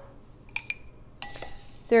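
Small metal baby's teaspoon clinking against a measuring cup while scooping a spoonful of dry wheat bran: two quick light clinks a little after the start.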